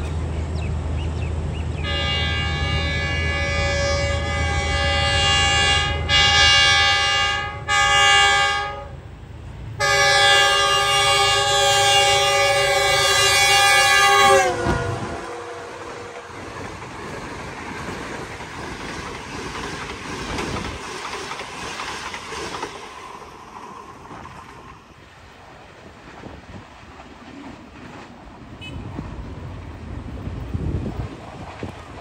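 Pakistan Railways express passenger train passing at speed behind a GE U20 diesel-electric locomotive. First comes the engine's low rumble, then a loud multi-note horn sounded in several long blasts from about two seconds in. The horn's pitch drops as the locomotive passes, after which the coaches rattle and clack by on the rails, fading as the train moves away.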